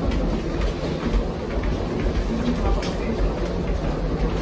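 Steady low rumble of people walking through an airport terminal corridor, with faint indistinct voices and a few light clicks.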